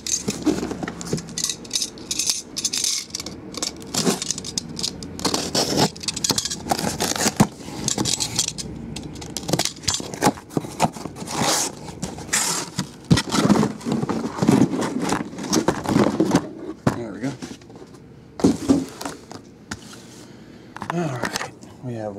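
Cardboard shipping case being opened and the card boxes inside pulled out and handled: a run of scraping, rustling and knocking of cardboard on cardboard and on the table.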